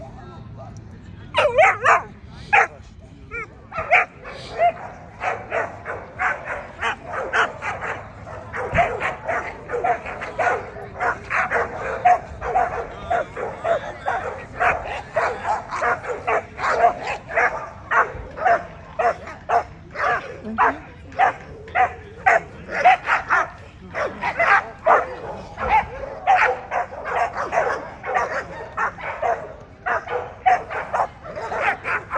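An American Pit Bull Terrier barking repeatedly in sharp, high yips, about two or three a second, starting about a second and a half in and hardly pausing.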